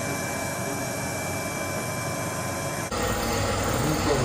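Steady machine hiss and hum with faint high whining tones. About three seconds in it changes abruptly to a lower, fuller steady hum.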